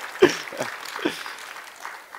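Scattered applause with some laughter from a small audience, dying down.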